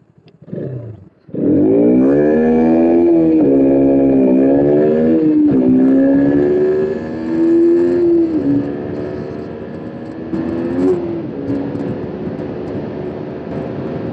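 KTM RC 200's 200 cc single-cylinder engine accelerating hard from low speed: after a brief rev at the start, the pitch climbs and drops back with each of several quick upshifts. It then settles into a steadier, quieter run at speed for the last few seconds.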